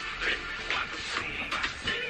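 Background music.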